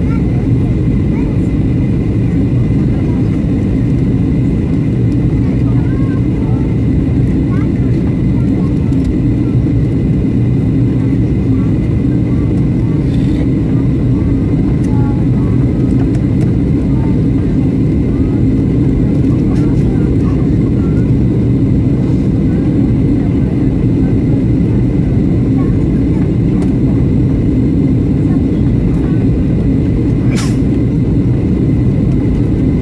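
Steady low drone of a Boeing 737 airliner in flight, engine and airflow noise heard inside the cabin.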